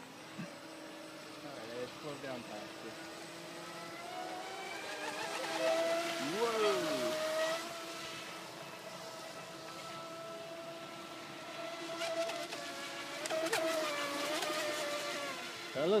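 Battery-powered RC speedboat running fast across the lake, its motor giving a steady whine that wavers in pitch and swells louder twice as the boat passes, with one quick rise and fall in pitch about six seconds in.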